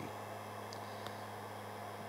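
Heat gun blowing on a very low setting, a steady low hum with a faint hiss.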